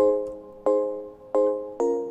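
Ableton Live's Glass Piano software instrument playing a looped chord progression dry, with its chorus effect bypassed. Four chords are struck, each ringing and fading before the next.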